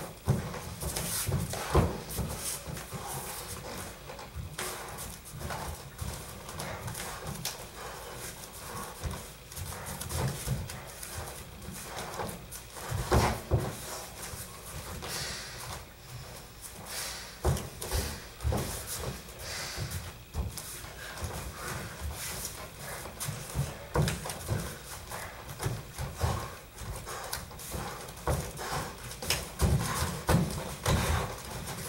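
Irregular thumps and slaps of bare feet stepping and shuffling on foam training mats, mixed with hands and bodies making contact during light bare-knuckle drilling.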